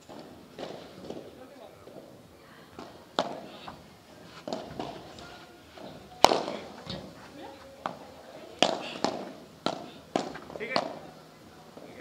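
Padel rally: sharp pops of paddles striking the ball and of the ball bouncing off court and glass, about ten hits. The loudest comes about six seconds in, and the hits come faster, roughly two a second, late on.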